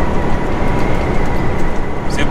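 Steady drone of a semi truck on the move, heard inside the cab: engine and road noise, heavy in the low end, with a faint high steady whine over it.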